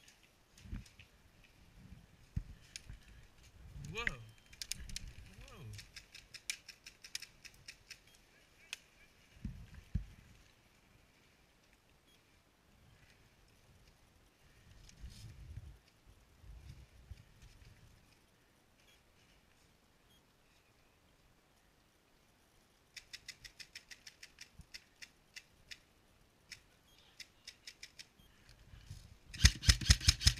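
Airsoft electric rifles firing on full auto: a fainter rapid clatter of shots from about three quarters of the way in, then a loud, close burst right at the end. Earlier, a faint voice calls out briefly, among scattered low knocks.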